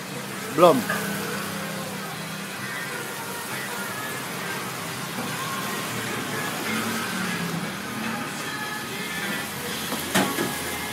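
Background chatter and music over a steady low hum, with a single short spoken word just under a second in.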